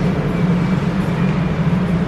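Steady low droning background noise, a constant hum over a rumble, with no change in level.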